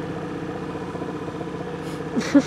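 A boat's outboard motor idling steadily, an even running sound with no change in speed.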